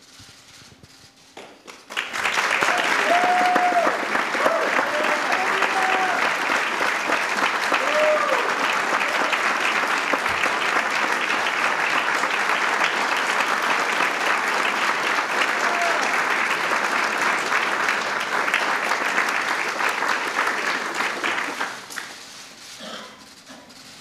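Audience applauding. It starts suddenly about two seconds in, holds steady with a few voices calling out in the first seconds, and dies away about two seconds before the end.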